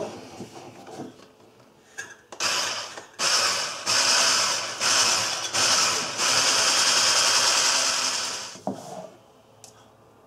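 Electric whisk beating egg yolks and sugar in a bowl. It starts about two seconds in with several short on-off bursts, then runs steadily for a couple of seconds and stops near the end.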